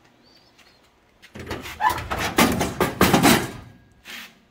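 Heavy metal cabinet drawer being pulled open, with a brief squeal from the slides and the bent steel tubing inside clattering loudly for about two and a half seconds after a quiet first second.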